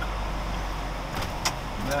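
Inside a moving car: a steady low engine and road rumble as it drives slowly along a street, with a few light clicks in the second half.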